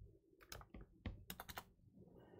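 Faint typing on a computer keyboard: a quick run of keystroke clicks over about a second.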